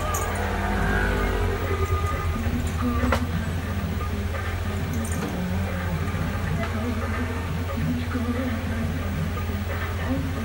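Handheld electric vibrating massager buzzing against the scalp: a steady low hum that wavers as the head is pressed and worked over. A single sharp click about three seconds in.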